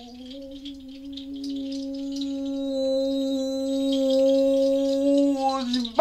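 A woman's voice holding one long sung note, steady in pitch and swelling louder, with a brief dip near the end.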